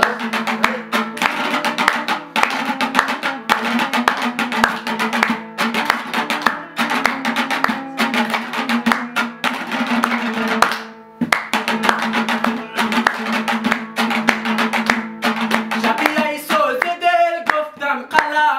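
Hazaragi dambura (long-necked two-string lute) strummed over a steady harmonium drone, with hand clapping in time. The music drops out briefly about eleven seconds in, and a man's singing voice comes in near the end.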